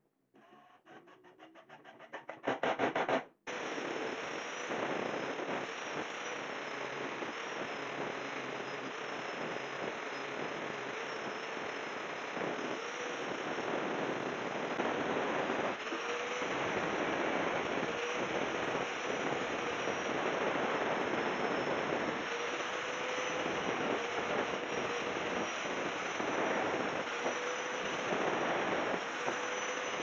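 A cordless impact driver sets a screw into a wooden frame corner with a fast rattle that speeds up. It stops abruptly and gives way to an angle grinder running steadily as it grinds down the wooden frame's corners, its motor tone dipping now and then under load.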